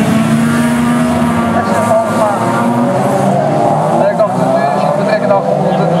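Several autocross race cars with their engines revving hard as they race round a dirt track, the pitch climbing in the first couple of seconds and then rising and falling as they shift and corner.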